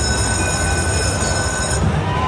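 Wolf Run slot machine sounding a steady, high, ringing electronic tone as its free-spins bonus triggers, cutting off suddenly near the end, over a low background rumble.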